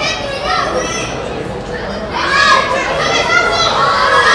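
Several raised voices shouting and calling out across a football pitch, growing louder about two seconds in.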